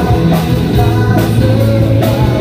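Live rock band playing loudly: electric guitar, bass and drum kit, with a male singer at the microphone.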